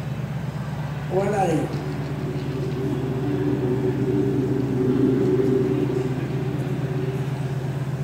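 Steady low droning hum, joined about two seconds in by a higher sustained drone of several held tones, from the soundtrack of a projected shadow-animation installation; it cuts off suddenly near the end.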